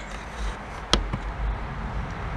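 A sharp click about a second in, with a fainter one just after, over low background noise: the red push buttons on a still-air incubator's control panel being pressed to step the temperature setting down.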